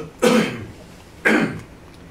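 A woman coughing twice, about a second apart.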